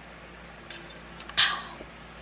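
A drinking tumbler set down on a coaster with one short knock about one and a half seconds in, after a couple of faint clicks.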